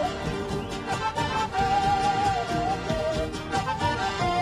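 Andean folk music: a quena, an end-blown notched flute, plays a melody of long held notes that slide between pitches over a steady rhythmic accompaniment.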